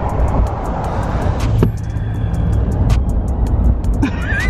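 Road noise inside a moving vehicle at highway speed: a steady low rumble of tyres and engine with wind hiss, the hiss easing off after about a second and a half.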